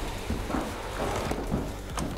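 Drywall flat box rolling along a ceiling seam, its wheels and blade spreading joint compound with a faint, uneven hissing rustle.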